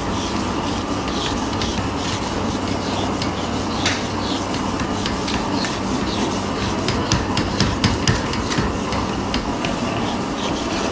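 Whiteboard eraser wiped back and forth across a whiteboard: a run of dry rubbing strokes, busiest about seven to eight and a half seconds in, over a steady background rumble.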